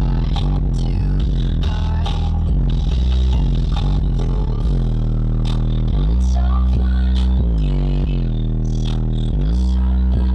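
Bass-heavy music played loud through a car audio system with four DS18 EXL 15-inch subwoofers in a Q-Bomb box, heard inside the vehicle's cabin. Deep bass notes change pitch every second or so under sharp percussion hits.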